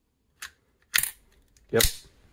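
AR-15 ejection port dust cover snapping open under its spring with one loud, sharp metallic click about a second in, after a fainter click just before. The snap shows the newly installed spring is working properly.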